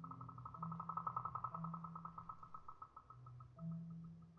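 A marimba quartet playing softly. A fast roll of repeated high notes swells and then fades over about three seconds, above slow, sustained low rolled notes that step from pitch to pitch.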